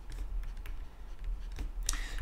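Stylus tapping and scratching on a tablet during handwriting: a string of light, irregular clicks over a low steady hum.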